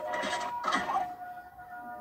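A short electronic sound effect or snippet of music: two held tones, the first higher, then a lower one that takes over about a second in, with faint talk beneath.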